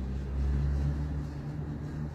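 A low, steady rumble, deep and even, with no speech over it.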